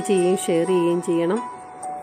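A woman speaking in short phrases, which stop about one and a half seconds in, over background music with long held notes.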